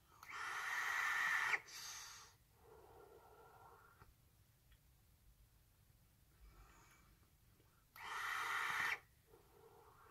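Two draws on a vape, each about a second long: air hissing through the rebuildable tank's airflow as the coil fires at sixty watts, each draw followed by a softer exhale.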